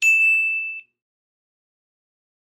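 A single bright ding sound effect, a bell-like chime struck once that rings and fades out in under a second.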